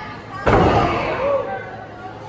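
A wrestler's body hitting the wrestling ring's canvas: one loud impact about half a second in, ringing on briefly in the hall, with voices around it.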